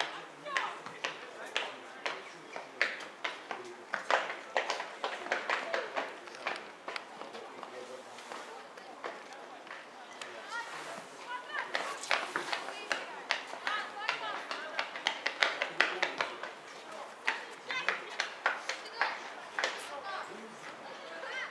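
Indistinct talking of nearby spectators, mixed with frequent short, sharp clicks and knocks.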